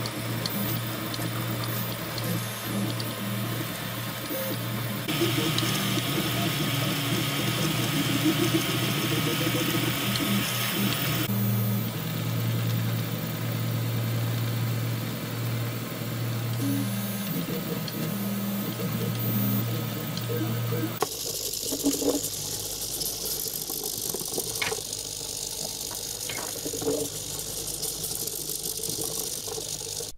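3D printer at work: its stepper motors hum and whine in steady tones that shift as the print head and bed move, over several cut-together stretches. Near the end the tones stop and only a few scattered clicks remain.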